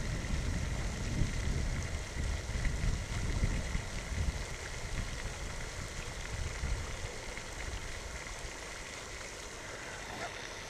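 Steady splashing hiss of a pond fountain aerator's spray, with a low rumble that eases off toward the end.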